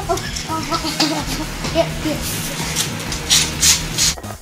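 Indistinct boys' voices, with a few short hissing noises in the second half.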